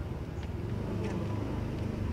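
A car driving past, its engine a steady low rumble.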